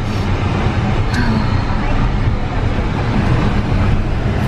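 Road noise of a moving car heard from inside the cabin, a steady low rumble.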